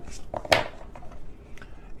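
A tarot card being drawn from the deck and put down, with one sharp snap about half a second in.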